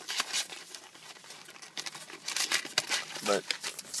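Plastic shrink wrap crinkling and tearing as a sealed box of trading card packs is unwrapped, in irregular rustles.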